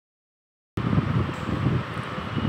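Silence for under a second, then a steady rumbling, fluttering noise of moving air buffeting the microphone, typical of a fan's draught blowing across it.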